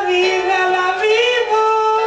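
Sung ballad: a high voice holding long notes over music, stepping up in pitch about a second in.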